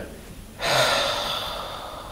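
A man lets out a long, breathy sigh that starts about half a second in and slowly fades away.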